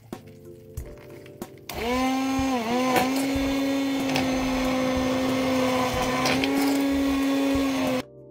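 Hamilton Beach immersion blender switching on a couple of seconds in and running with a loud, steady motor whine as it purées cooked cauliflower and broth in a pot. Its pitch dips for a moment soon after starting, then holds steady until it cuts off at the end.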